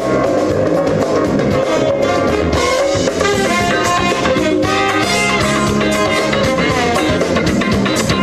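Live band recording with a drum kit, electric bass and guitar, and a horn section of trumpet, trombone and saxophones playing together, loud and without a break.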